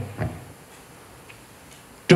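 A pause in a man's speech through a microphone: a brief spoken sound just after the start, then quiet room tone until he speaks again.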